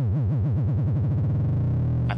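A synthesizer's triangle-wave oscillator with a vibrato that speeds up faster and faster until the wobble blurs into a steady, buzzy tone near the end. The modulating oscillator has passed into audio rate, and the frequency modulation now adds new overtones (sidebands) to the sound.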